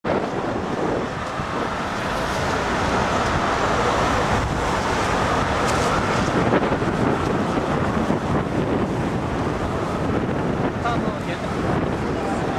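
Steady rushing noise of city street traffic mixed with wind buffeting the microphone, with faint voices near the end.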